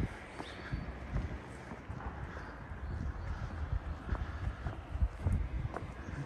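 Footsteps of a person walking steadily on a paved street, soft thumps at a walking pace over a low outdoor background hum.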